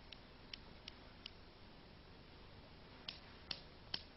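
Faint sharp clicks of two suspended steel pendulum balls of different masses knocking together, four in quick succession in the first second and a half, then three more in the last second.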